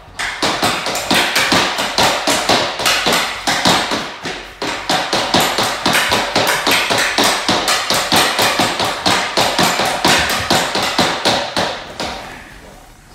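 Rapid stickhandling: a hockey stick blade clacking a green off-ice training puck back and forth on a laminate wood floor, with sharp taps at about three to four a second that start suddenly and keep going.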